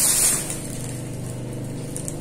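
A steady low motor hum, like an engine running nearby. A loud hiss is heard over it and cuts off suddenly about half a second in.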